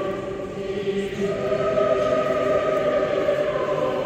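Orthodox church choir chanting in slow, sustained chords, moving to a new chord about a second in, with the long reverberation of a large cathedral.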